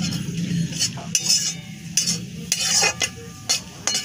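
Flat metal spatula scraping and clinking against a metal kadai in irregular strokes while ground spices are stirred into hot oil and ghee, with a light sizzle underneath.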